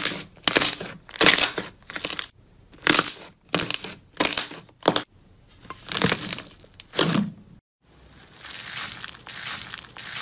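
A thin plastic drink bottle being crushed and crumpled by hand: about ten loud crackling crunches, one every half second to a second. After a break near the end, a softer, steadier crunching of a hand pressing into slime packed with small beads.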